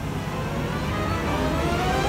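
A transit bus accelerating, its engine and drivetrain whine rising slowly and steadily in pitch.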